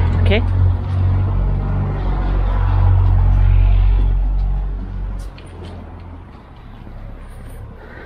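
A loud, low rumble that dies down about five seconds in, leaving a quieter steady background.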